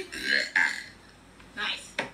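A person burping, heard through the played-back clip, mixed with talk.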